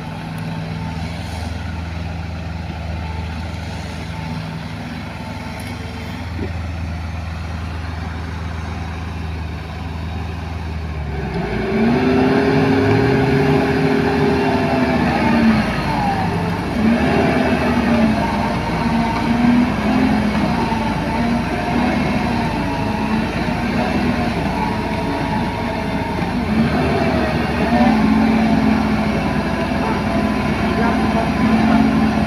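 Diesel engines of heavy machinery, a mini excavator and a mired compactor roller, running steadily at first. About eleven seconds in they get louder and rev up and down in repeated surges as the machines work under load to drag the roller out of the mud.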